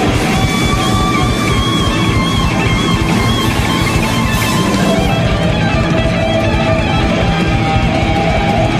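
Live instrumental rock band: an electric guitar plays a lead line over a drum kit and bass. It holds high wavering notes through the first half, then drops to lower sustained notes about five seconds in.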